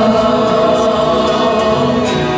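Women's choir singing, holding a long sustained note.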